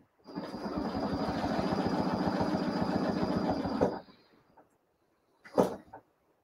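Domestic sewing machine stitching in a fast, steady run while the quilt is guided along a ruler template for free-motion ruler work, stopping after about four seconds. A short knock comes near the end.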